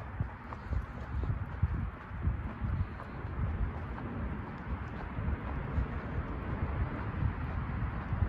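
Footsteps of someone walking on a concrete sidewalk, with irregular low thumps from the handheld camera jostling as he walks, over a steady background hiss.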